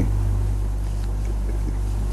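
Steady low hum with a faint hiss, the background noise of the recording, unchanged through a pause in speech.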